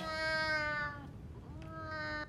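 A cat meowing twice: a long meow of about a second that falls slightly in pitch, then a shorter second meow starting near the end.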